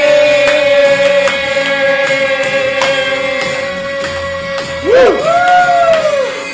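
Singing over a music track: one long note held for about five seconds, then sliding notes near the end.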